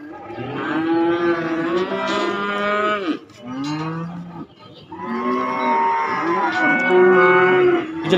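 Young cattle mooing loudly: a long call, a short one, then another long call, each sliding down in pitch as it ends.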